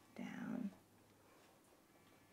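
A woman's short wordless vocal sound, about half a second long and falling in pitch, just after the start; faint room tone otherwise.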